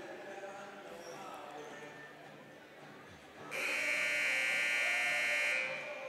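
Gymnasium scoreboard buzzer sounding one steady, harsh tone for about two seconds, starting about three and a half seconds in, signalling the end of halftime. Faint crowd chatter before it.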